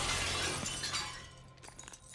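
A plate-glass shop window smashed with a baseball bat: glass crashing down and shards tinkling as the sound fades.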